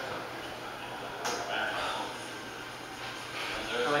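Faint, indistinct voices over room noise, with one sharp click about a second in.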